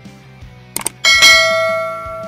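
Subscribe-button sound effect: two quick clicks just before one second in, then a bright bell ding that rings and slowly fades.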